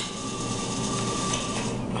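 A claw machine's claw being lowered on its cable: a click right at the start, then the drop mechanism running with a thin steady whine that stops shortly before the end as the claw comes down onto the plush toys.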